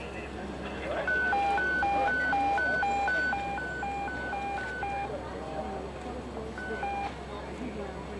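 An electronic two-tone hi-lo alarm alternates between a high and a low tone, about two high-low cycles a second, for some four seconds. It stops, then sounds one more short high-low pair about a second and a half later.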